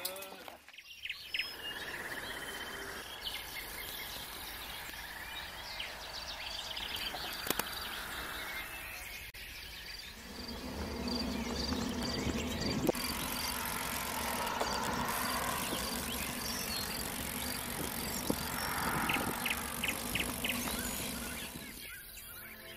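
Wind and tyre rolling noise from a road bike ridden along a country road, picked up by a camera on the bike, growing louder and lower from about halfway through. A faint regular high ticking runs through the first half.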